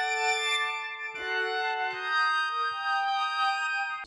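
Dry, unprocessed 'Majestic Guitar Grains' guitar preset playing a slow melody of held notes, with the notes changing about a second in and twice more later.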